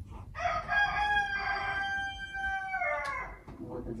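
A rooster crowing once: one long call of about three seconds that holds its pitch and then falls away at the end.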